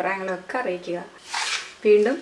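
Speech, with a short hiss about halfway through.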